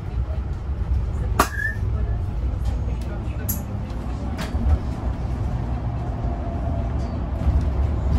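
Inside a moving shuttle bus: a steady low rumble of the drive and tyres on the road, with a few sharp rattles from the cabin fittings, the first with a brief squeak.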